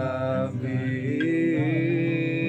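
A voice holding long, slightly wavering sung notes over an acoustic guitar picked with a plectrum.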